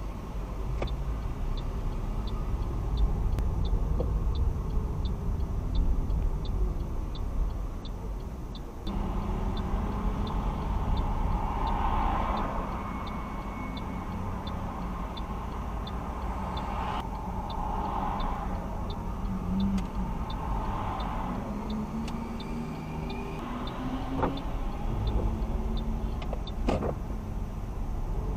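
Car cabin noise: a low engine and road rumble that grows louder at about 9 s as the car pulls away, with louder passing-traffic noise now and then. Throughout, the turn-signal indicator ticks steadily at about two ticks a second.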